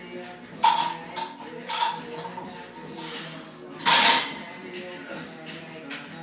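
Loaded barbell clanking against the steel hooks of a power rack as it is racked after a set. It makes several sharp, ringing metal clanks, the loudest about four seconds in, over background rap music.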